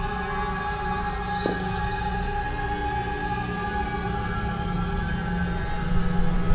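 Tense horror film score: a low droning bed of sustained tones with a rumble underneath, and a brief accent about a second and a half in.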